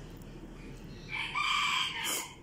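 A rooster crowing once, a held call of just under a second starting about a second in.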